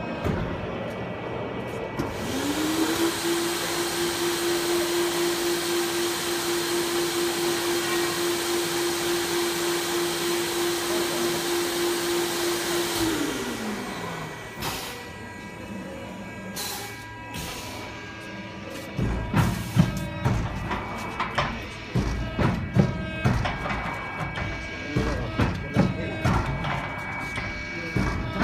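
Canister vacuum motor spinning up about two seconds in, running with a steady whine and rushing air, then winding down about thirteen seconds in. Irregular knocks and thumps follow in the last third.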